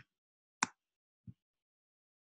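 Computer mouse clicks: a sharp click about half a second in and a softer, duller tap just over a second in, with dead silence between.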